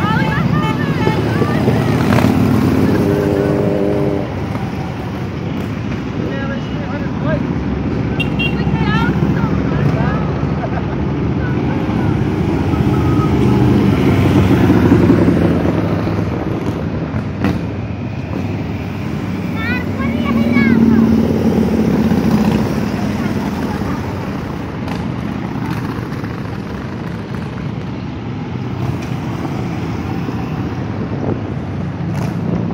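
A line of motorcycles riding past one after another, their engines swelling and fading as each goes by, over continuous traffic noise. The loudest passes come about halfway through and about two-thirds of the way in.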